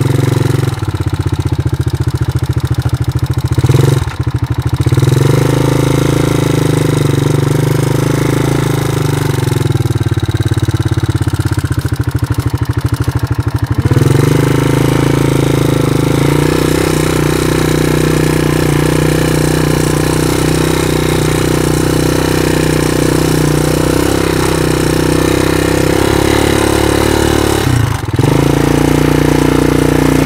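Yamaha Moto-4 quad's single-cylinder engine running steadily under way. Its note shifts about four seconds in and again near the middle, with a brief dip in level near the end.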